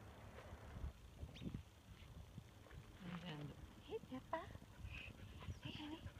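A dog whining faintly, with a few short, high, rising whines in the second half.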